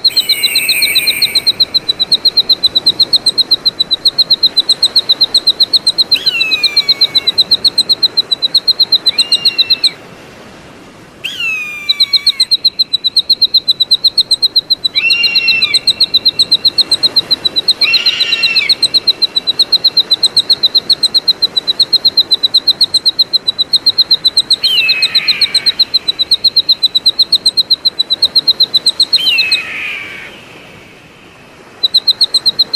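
Eagle giving about eight separate whistled calls, each sliding sharply downward in pitch. Under them runs a fast, even, high-pitched pulsing trill, the loudest sound, which breaks off briefly about a third of the way in.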